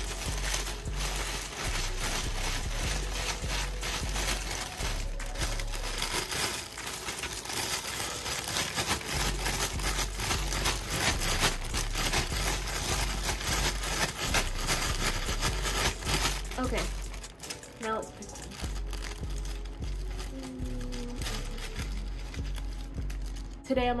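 A clear plastic bag crinkling and rustling as it is shaken to mix the paper sticky notes inside, dense and continuous, easing off about two-thirds of the way through.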